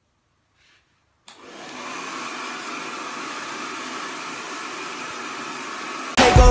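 Handheld hair dryer switched on a little over a second in, building quickly to a steady running noise.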